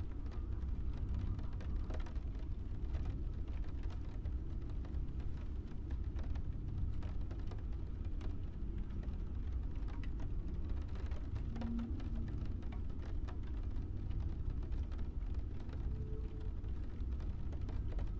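Steady low background rumble with faint scattered clicks through it.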